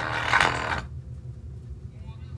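Bass-heavy electronic music played through a bare Dayton Audio speaker driver with no cabinet. A little under a second in, the upper part of the music drops out and only a low bass note carries on.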